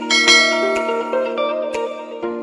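Background music with held notes, overlaid by a subscribe animation's sound effects: a bright bell-like chime rings just after the start, and a few short clicks sound.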